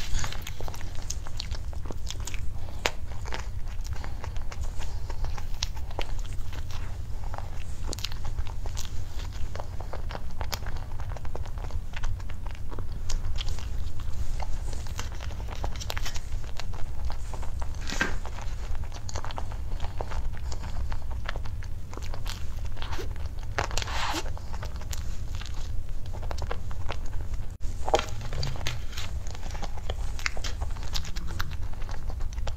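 Close-miked mouth sounds of someone biting into and chewing cream puffs topped with cream and blueberries: irregular soft smacks and small crunches scattered throughout, over a steady low hum.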